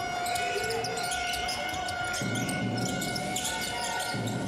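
Live arena sound of a basketball game: a ball bouncing on the hardwood court amid short sharp court noises. Arena music with steady held notes plays behind. A low rumble joins about halfway through.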